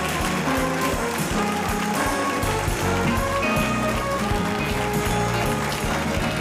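Studio band playing bright walk-on music, with a moving bass line and a steady beat.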